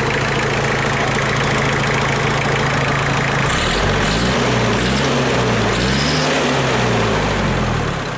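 ISEKI 5470 tractor's diesel engine running at idle. About halfway through, its speed rises and falls twice.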